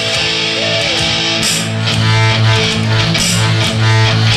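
Live rock band playing an instrumental passage with no vocals: electric guitar over bass guitar and drums with cymbals. The bass notes come in strongly about a second and a half in.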